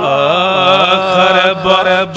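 A man chanting a naat, a devotional poem, in a melodic voice through a microphone and PA, holding and bending long notes, with a brief break about three-quarters of the way through.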